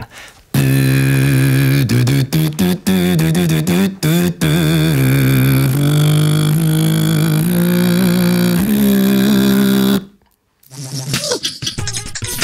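Beatbox lip oscillation: the lips buzz at a clear pitch, played as a short melody of held notes that step up and down, with a few brief breaks early on. It stops about ten seconds in, and electronic intro music starts shortly after.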